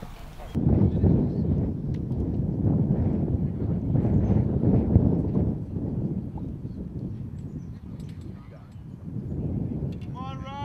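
Wind buffeting the microphone: a loud low rumble that starts suddenly, is heaviest in the first half and eases off before swelling again near the end.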